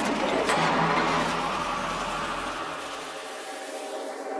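Hardstyle dance track in a breakdown: a noise sweep over held synth tones, slowly fading, with the bass dropping out about three seconds in as it builds toward the drop.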